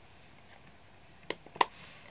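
Two sharp plastic clicks a fraction of a second apart, the second louder: a Stampin' Up! ink pad's plastic case being handled and snapped open.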